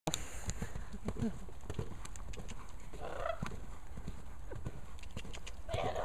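Hoofbeats of a coloured gelding trotting on a sand arena surface, a run of dull thuds. A brief voice-like sound comes about three seconds in and again near the end.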